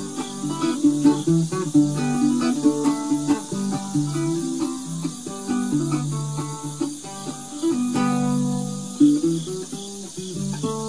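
Solo ukulele picking an instrumental melody note by note, with steady high cricket chirring in the background.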